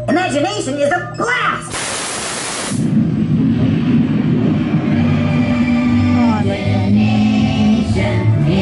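Dark ride's soundtrack: spoken character voices for about the first second and a half, then a brief rush of noise, then music with held notes.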